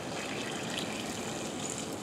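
Rascal 235 mobility scooter driving through a turn on wet pavement: a steady watery hiss from its tyres on the wet surface.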